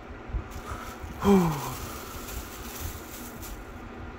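Crinkly black tissue-paper wrapping in a shoebox rustling as it is handled and folded back, with one short falling vocal exclamation about a second in.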